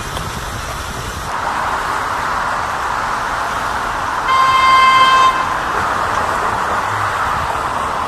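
A vehicle horn sounds one steady blast of about a second, midway through, over a continuous hiss of city street and traffic noise.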